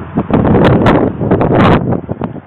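Wind buffeting the camera's microphone: loud, irregular rumbling noise, strongest in the second half.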